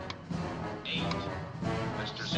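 Tense orchestral drama score with long held notes.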